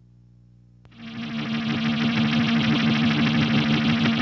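Trailer soundtrack music: a faint low drone, then about a second in a loud rock track with distorted electric guitar kicks in and carries on.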